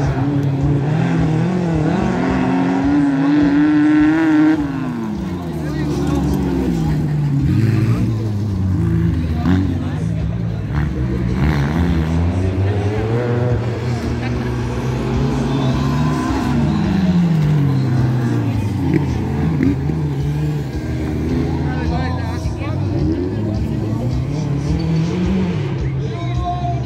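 Engines of several off-road racing buggies revving up and down as they race around a dirt track, their pitch rising and falling again and again as they accelerate and back off.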